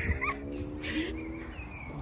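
A person's voice held on one long, steady drawn-out note for about a second and a half, fading out before the end.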